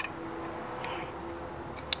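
Three light metal clicks as a clutch throwout bearing and the fingers of a clutch fork are handled and knocked together by hand: one at the start, one a little before the middle, one near the end.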